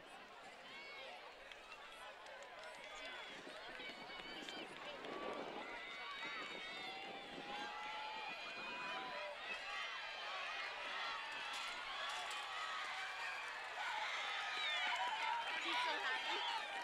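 Track-meet spectators in the stands, many voices talking and calling out at once, growing steadily louder and swelling into cheering toward the end.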